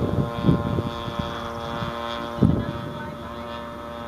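Zenoah G-38 single-cylinder two-stroke petrol engine of a quarter-scale radio-control model aircraft running steadily in flight at high throttle, fading slightly in the second half. Two brief low bumps on the microphone come about half a second and two and a half seconds in.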